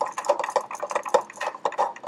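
Plastic film-developing tank being agitated by twisting its centre agitator rod, making a quick, uneven run of small plastic clicks and rattles.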